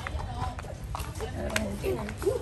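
Indistinct talking from several people nearby, with a few short, sharp taps or clicks over a steady low rumble.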